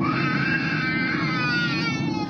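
A baby crying in one long wail over the steady drone of an airliner cabin.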